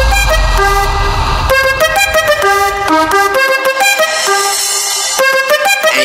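Tribal/guaracha dance music from a DJ mix: a lead melody of held notes moving in steps over fast high percussion. A heavy bass plays for about the first second and a half, then thins out and is almost gone for the second half.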